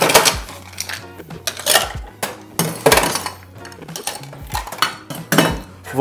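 Ice cubes dropped into a stainless-steel cobbler cocktail shaker, clattering and clinking against the metal in several separate irregular drops.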